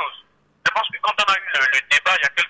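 Speech only: a caller talking over a telephone line, the voice narrow and thin, with a short pause about half a second in.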